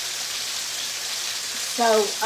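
Pork chops sizzling steadily in oil in a skillet on the stove, an even frying hiss.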